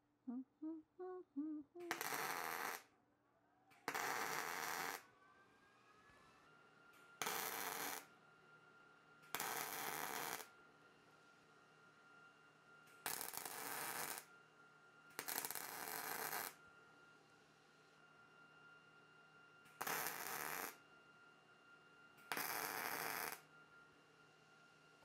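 MIG welder laying tack welds on washers: eight short bursts of arc crackle, each about a second long, with pauses of one to three seconds between them. A faint steady hum runs underneath.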